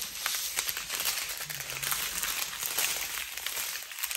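Plastic packaging crinkling and rustling as small bags of diamond painting drills are handled, with faint scattered ticks.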